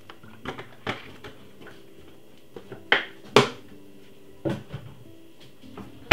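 A handful of short, sharp knocks and clicks, the loudest about three and a half seconds in, as a cooking-oil bottle is poured and set down among bowls on the worktop. Faint music plays underneath.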